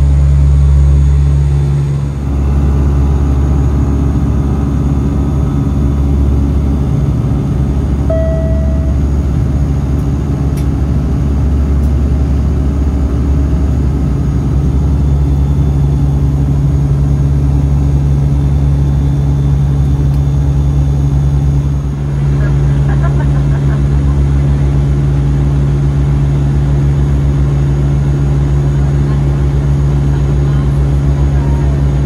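Cabin drone of a Dash 8-300 turboprop in cruise: a loud, steady low hum from the Pratt & Whitney Canada PW123 engines and propellers, with a rushing noise over it.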